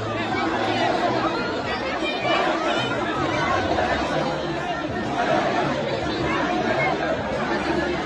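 A large crowd's many voices talking and calling out at once, a steady din of chatter.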